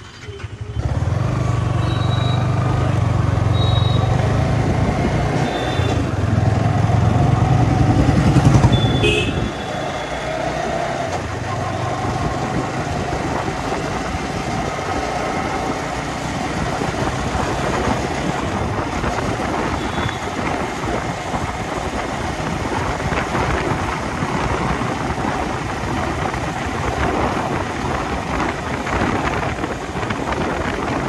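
Yamaha R15 V4's 155 cc single-cylinder engine starting up under a second in and running with a deep steady note, louder around eight seconds. From about nine seconds in the bike is ridden along the road: the engine runs under a steady rush of wind noise.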